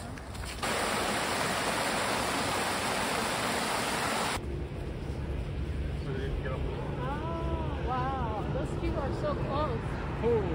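Steady rushing of water, a loud even hiss that starts just under a second in and cuts off abruptly a little over four seconds in. After it comes a low rumble of wind on the microphone, with high voices talking in the last few seconds.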